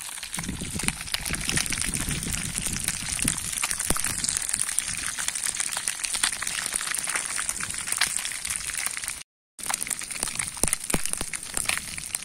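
Pieces of fish frying in bubbling oil in a black skillet over a wood campfire: a steady crackling sizzle. It cuts out for a moment about nine seconds in.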